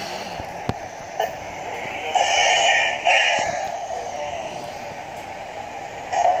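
Cartoon soundtrack playing from a tablet's small speaker: high, synthetic-sounding vocal sounds over music, loudest from about two to three and a half seconds in. There is a single click just under a second in.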